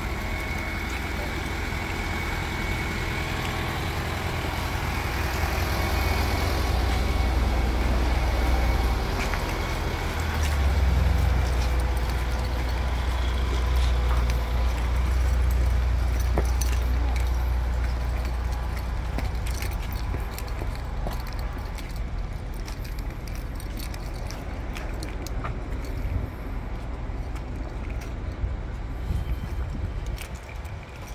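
Road traffic going by on a city street: a low rumble that swells for about ten seconds in the middle, over a steady hiss of street noise, with light scattered ticks near the end.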